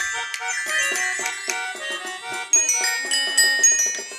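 A toy xylophone struck in quick ringing notes among other small toy instruments played together, an amateur attempt at a tune. The strikes grow louder and more regular about two and a half seconds in.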